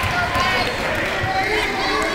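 A basketball dribbled up a gym floor, a few dull bounces, under the talk and shouts of spectators and players.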